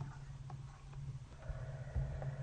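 Steady low electrical hum from the recording setup, with faint stylus taps on a drawing tablet as the word is handwritten. There is a soft thump about a second and a half in and a louder one at the very end.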